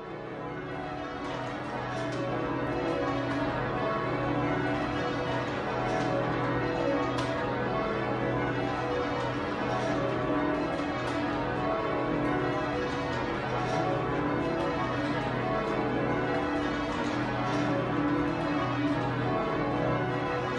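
The twelve John Taylor bells of St Mary Redcliffe (tenor about 50 cwt, in B) rung full-circle in call-changes, a continuous overlapping stream of strikes. The sound fades in over the first couple of seconds.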